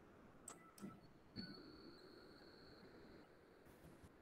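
Near silence: room tone with three faint clicks in the first second and a half, then a faint high steady whine for about two seconds.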